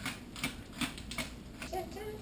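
A hand-twisted pepper mill grinding peppercorns in a series of short crunching turns, about three a second. A woman's voice hums a note near the end.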